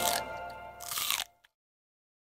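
A cartoon crunching bite sound effect over the fading end of a children's song, then dead silence from just after a second in.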